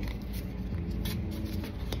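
Light scratching and small clicks of a weeding hook picking at and lifting reflective heat-transfer vinyl on a fabric garment, over a steady low hum.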